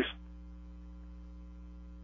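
Steady mains hum in the radio broadcast audio: a low, even electrical drone with several fixed tones. The tail of a spoken word is heard right at the start.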